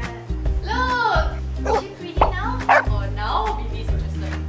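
A dog barking and yipping in several short, high-pitched calls, first about a second in and again a few times through the middle, over background music.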